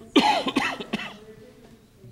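A person coughing, a short run of loud coughs in quick succession within the first second.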